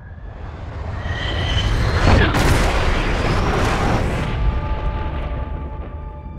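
Fighter jet passing low and fast: a roar that builds, peaks about two seconds in with a falling whine as it goes by, then slowly fades. Steady held music tones come in near the end.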